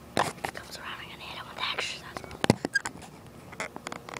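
Whispering close to the microphone, with a few sharp clicks, the loudest about two and a half seconds in.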